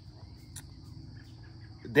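Insects trilling steadily in the background, one unbroken high-pitched band of sound, with a faint tick about half a second in. A man's voice starts just at the end.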